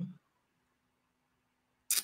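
Brief 'mm-hmm' trailing off, then a quiet pause with a faint steady hum, broken by one short sharp noise near the end.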